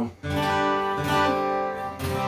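Acoustic guitar strummed, its chords ringing out, with a fresh strum about a second in.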